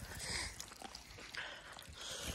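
Faint rustling and scuffing, with a few soft, irregular knocks, from a camera being handled and carried over rocky ground.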